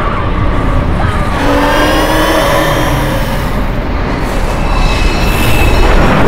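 Film sound effects for a smoke-like shadow monster: a loud, continuous roaring rush with a deep rumble underneath. Wavering, screeching glides rise and fall over the middle.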